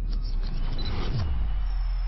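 Electronic outro sound design: a deep steady bass drone under crackly glitch noise, with a short falling sweep about a second in and a thin high whine starting near the end.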